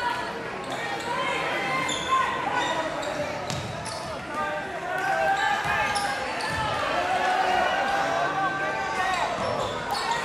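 Live basketball game sound in an echoing gym: a basketball bouncing on the hardwood court under a constant hubbub of crowd and player voices and shouts, which gets louder about halfway through.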